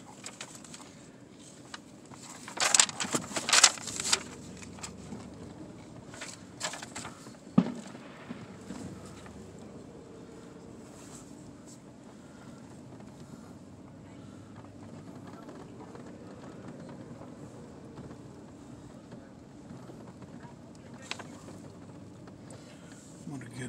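Steady low rumble of a car's cabin while it rolls slowly across a parking lot, with a cluster of loud sharp knocks or rustles around three seconds in and a single sharp click a little later.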